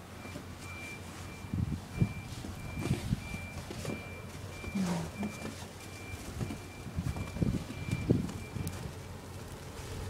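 Electronic warning beeps: a single high tone repeated about twice a second, stopping about nine seconds in, over scattered low thumps.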